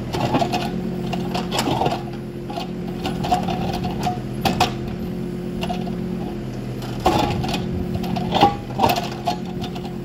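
Kubota mini excavator's small diesel engine running steadily while the bucket digs into rocky red dirt and gravel, with scraping and clinks and clanks of stone against steel. The loudest clanks come about seven seconds in and again between eight and nine seconds.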